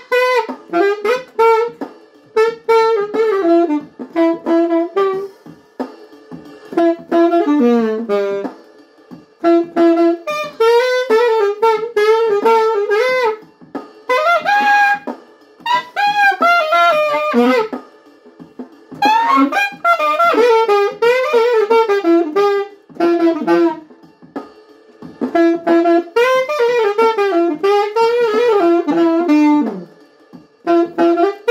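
Solo saxophone playing a lament melody in phrases broken by short breath pauses every few seconds, held notes wavering with vibrato.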